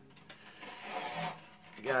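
Faint rubbing of a wound guitar string, a bronze low E, being drawn through the hole in a tuning-machine post by hand. A word of speech comes in just at the end.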